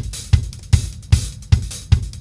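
Multitrack drum-kit recording played back after quantising with Beat Detective: the kick drum hits steadily about two and a half times a second, with hi-hats over it. The trimmed edit leaves it playing cleanly, without the artifact of the hi-hat landing after the kick; "beautiful".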